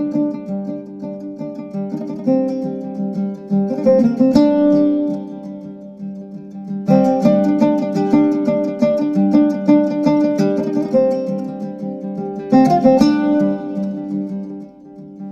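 Instrumental music on a plucked string instrument: chords are strummed and left to ring, with strong fresh strums about four seconds in, about seven seconds in, and again near the end.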